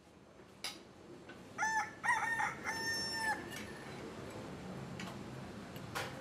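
A rooster crowing once, from about a second and a half in to just past three seconds, over a faint background with a few light clinks.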